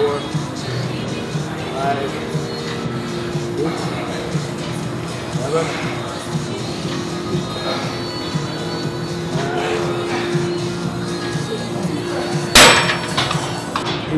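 Background music in a gym with a man's strained breathing and grunts during a heavy set, then one loud clank of the machine's weights near the end.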